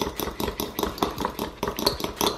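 Metal fork whisking egg yolks in a ceramic bowl, the tines clicking against the bowl in a fast, even rhythm of about ten strokes a second.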